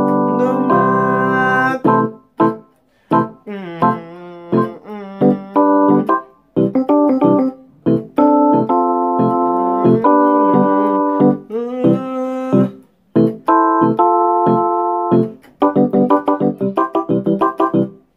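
Electronic keyboard playing a song's chord progression: chords held for a second or two, broken by brief pauses and quicker runs of single notes.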